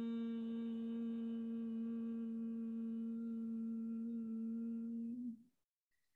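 A woman chanting Om, holding the closing 'mmm' as one long steady hummed note that dips slightly and stops about five seconds in.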